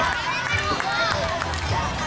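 Several voices calling and shouting across an outdoor football pitch, over a steady low background rumble.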